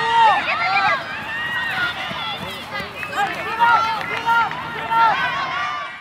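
Several people's voices shouting and calling over one another at a steady, lively level. The sound cuts off abruptly at the end.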